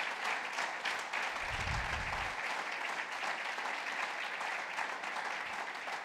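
Audience applauding, dense steady clapping that carries on for several seconds and dies away near the end as the speech resumes.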